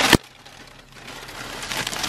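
A sharp knock right at the start, then soft rustling of paper food wrappers as wrapped Taco Bell items are handled and packed into a plastic bowl, the rustle building slowly.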